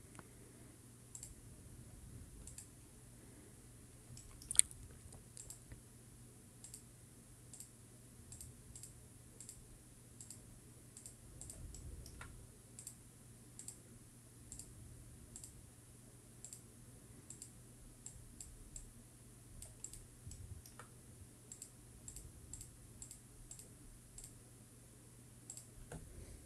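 Computer mouse clicking in short, irregular single clicks, one louder about four and a half seconds in, as points of a cut are placed, over a faint steady low hum.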